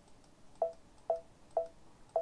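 Embroidery machine's touchscreen beeping as the size '+' key is tapped repeatedly: three short, identical beeps about half a second apart.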